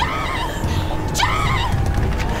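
A woman's short, high-pitched panicked cries while running, two of them about a second apart, over a steady low rumble.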